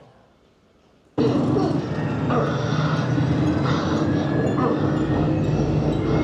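Fighter-jet engine sound from a film's flight scene, played loud through a multichannel home-theater speaker system, with pilots' radio voices over it. It starts suddenly about a second in, out of near silence, and then runs on steadily with a heavy low end.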